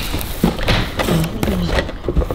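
A cardboard cake box being handled on a table: a few taps and thumps, with voices and possibly background music underneath.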